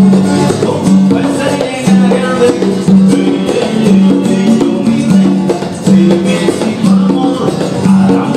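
Latin-style instrumental music: an amplified acoustic-electric guitar playing plucked melody lines over a backing of a repeating bass line and light percussion.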